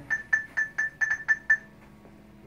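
Zebra MC9190-Z RFID handheld beeping in TracerPlus's Geiger locator mode: about eight short, high, identical beeps in a second and a half, coming a little faster toward the middle. The beeps signal that the tag being searched for is within the reader's range.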